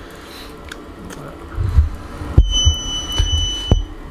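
Several heavy, dull bumps of handling, and a single steady high-pitched electronic beep lasting a little over a second, starting just past the middle.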